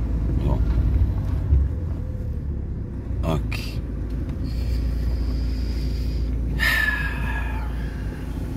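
Low, steady engine and road rumble heard from inside a moving car's cabin, with a dull thump about one and a half seconds in.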